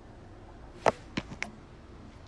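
A handful of sharp knocks and clicks from the phone being handled and moved: one loud one a little under a second in, then three smaller ones close together.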